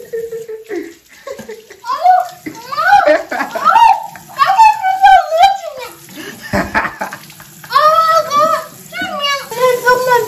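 A person's voice in long, gliding, sung-like notes without clear words, over water splashing in a bathroom sink. A short, sharp splash comes about six and a half seconds in.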